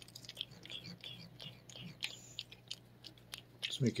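A cat licking paste from a squeeze-pouch treat: quick, irregular small wet clicks and smacks of its tongue. A woman's voice starts talking right at the end.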